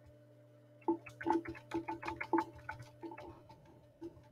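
Computer keyboard being typed on: a quick, uneven run of key clicks that starts about a second in and stops shortly before the end.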